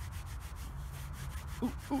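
Fingers rubbing soil off a dug-up George III copper coin in rapid, repeated scratchy strokes, with a man's 'ooh' near the end.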